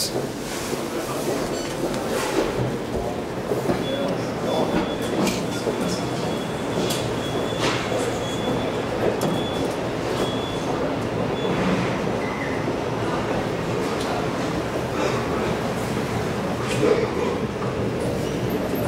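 ITK passenger elevator car travelling, a steady low rumble of the running car. A faint high tone sounds for several seconds in the middle, with a few light clicks.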